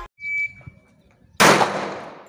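A short electronic beep from a shot timer, then about a second later a single pistol shot fired on the draw from the holster, its echo fading slowly.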